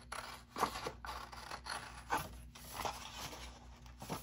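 Scissors cutting through a sheet of patterned scrapbook paper: a series of short snips, about one every half second, as the blades follow a pencil line.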